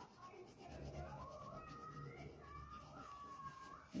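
Wax crayon rubbed back and forth on paper, a faint scratching of colouring strokes. A faint wavering tone runs under it from about half a second in until just before the end.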